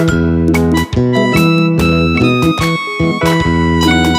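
Yamaha arranger keyboard played by hand: a run of melodic notes over chords and a steady bass line.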